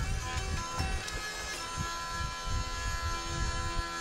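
Ukrainian lira (hurdy-gurdy) playing an instrumental passage without singing: a steady drone under held melody notes, the last one sustained from about a second and a half in. A low, irregular rumble runs underneath.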